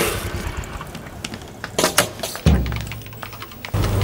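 Handling noise from a parked scooter: a few sharp clicks and knocks about two seconds in, and two dull thumps, one past the middle and one near the end.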